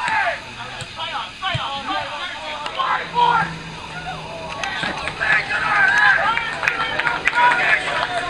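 Several voices shouting across a floodlit football pitch during open play, loudest in the second half, with a few sharp knocks among them.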